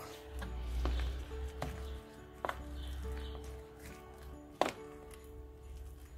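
Soft background music with long held notes, and a wooden spoon stirring diced apricots into whipped cream in a plastic bowl, knocking sharply against the bowl four times, the last knock, a little past halfway, the loudest.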